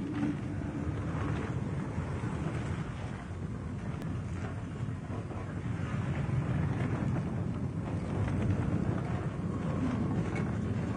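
A steady, low, wind-like rumble from a film soundtrack, with no clear tune or voice.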